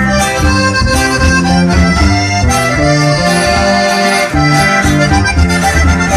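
Live norteño band playing an instrumental passage: an accordion carries the melody over strummed guitar and a bass line that steps in a steady beat.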